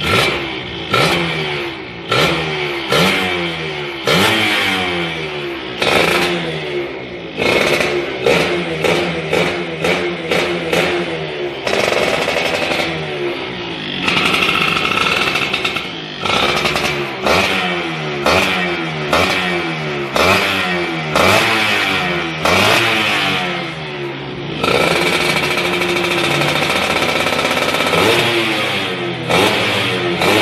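Yamaha F1ZR two-stroke underbone engine with a race expansion-chamber exhaust, set up for racing, revved on the spot in quick repeated throttle blips, its pitch jumping up and falling back with each one. Near the end it is held at high revs for a few seconds.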